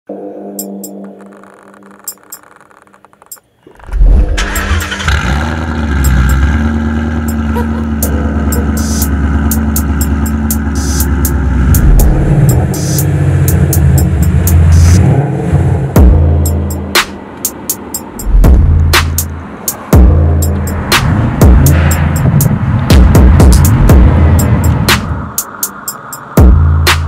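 Ford Mustang engine running loud and revving, mixed with background music that has a beat. The loud engine sound comes in suddenly about four seconds in, after a quieter opening.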